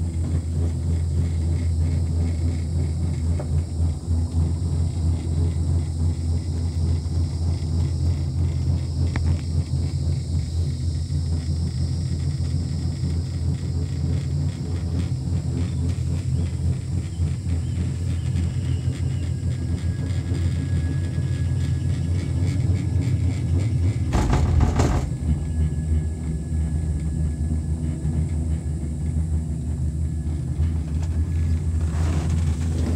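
Steady low rumble inside a Skyrail cableway gondola cabin as it rides along the cable. About three-quarters of the way through, a louder noise lasts about a second.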